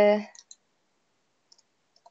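A woman's drawn-out hesitation "ee" trailing off, then near silence broken by a few faint small clicks.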